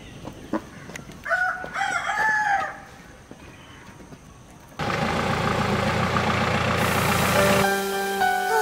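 A rooster crows once, a little over a second in, a single drawn-out call of about a second and a half, amid small scattered clicks. Near five seconds a steady rushing noise comes in suddenly and holds, and music begins near the end.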